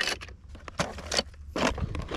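Wind buffeting the microphone as a low, steady rumble, with scattered rustling and small clicks and clinks of handling.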